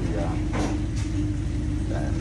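Steady low machine hum in a commercial kitchen, a constant drone with an unchanging pitch.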